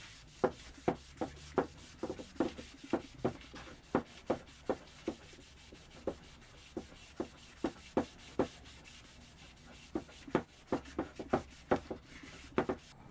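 Soft cloth buffing dried dark-walnut furniture wax on a wooden drawer, in short back-and-forth rubbing strokes about two or three a second, with a couple of brief pauses.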